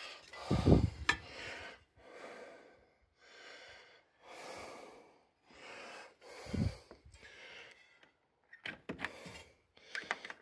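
A person breathing close to the microphone: a run of noisy breaths about one a second, with two low thumps about a second in and six and a half seconds in, and a few sharp clicks near the end.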